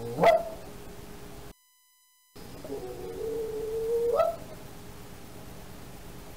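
A howl-like cry: a short, loud rising yelp at the start, then after a brief gap a held wail of about a second and a half whose pitch rises at the end.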